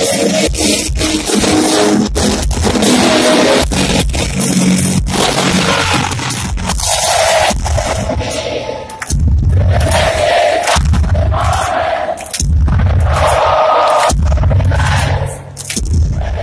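Loud live rock concert sound recorded from within an arena crowd, crowd noise and music from the stage mixed together. In the second half the sound goes in loud rhythmic surges, about one every second and a half, with brief dips between them.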